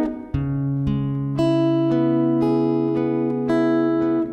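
Acoustic guitar playing an instrumental accompaniment, single notes picked one after another and left ringing over each other. Its sound dips briefly about a third of a second in, then a new low bass note comes in and carries under the higher notes.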